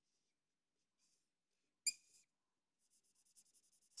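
Felt-tip whiteboard marker drawing on a whiteboard, very faint: a short high squeak about two seconds in, then light rapid scratching strokes near the end.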